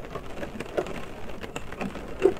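Rain drops hitting the windows and roof of a car, heard from inside the car: a dense, irregular spatter of small ticks over a steady hiss.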